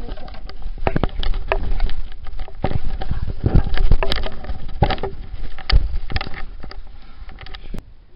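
Handling noise from a camera or phone moving in the dark: irregular knocks, clicks and rustling against the microphone over a low rumble. It cuts off suddenly near the end.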